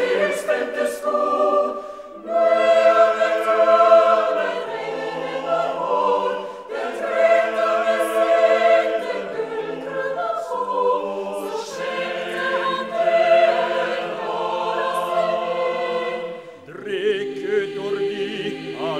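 Chamber choir singing a Norwegian folk-song setting in held, sustained chords, phrase by phrase, with brief breaks between phrases every few seconds.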